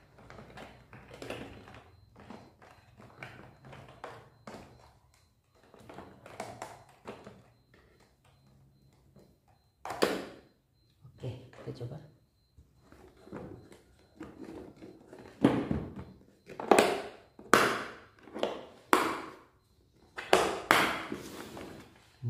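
Hose and cordless pressure-washer gun being packed into a Miniko hard plastic carrying case: handling noise and light plastic knocks. Then a run of loud sharp clicks and thunks over the last several seconds as the case lid is shut.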